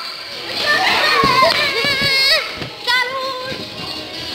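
Children's voices shouting and singing over party music, with a short dull knock about a second in.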